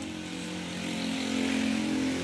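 A motorcycle engine running steadily, growing slightly louder and higher about a second in.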